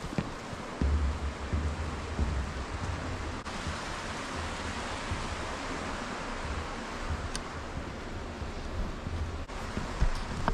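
Steady rush of running water from the stream below the footbridge, with wind buffeting the microphone in low gusts from about a second in.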